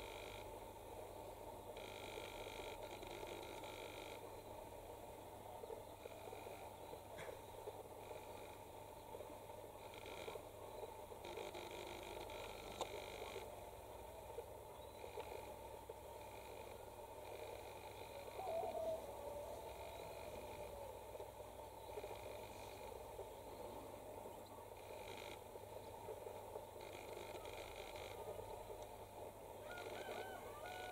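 Faint, steady outdoor background noise, with a brief faint warbling sound about eighteen seconds in.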